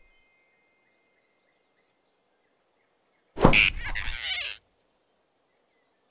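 Cartoon grab sound effect: a sudden whoosh and thump a little past halfway, lasting just over a second, as a big animated rabbit snatches a small squirrel. Around it, only faint forest ambience.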